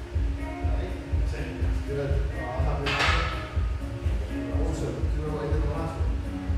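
Background pop music with a steady bass beat and singing. About halfway through there is a single sharp metallic clang as the loaded barbell is set back onto the squat rack.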